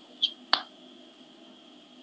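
Two short clicks about a quarter and half a second in, then faint steady background hiss with a thin high tone.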